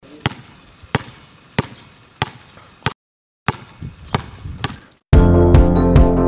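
A basketball being dribbled on an outdoor court, bouncing about one and a half times a second with a short break midway. Loud music comes back in near the end.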